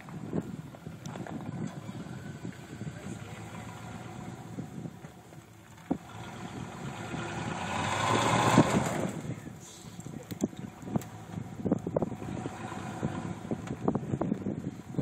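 Pickup truck engine running at low speed as the truck crawls down a rock ledge, growing louder for a couple of seconds around the middle. Scattered sharp knocks in the second half.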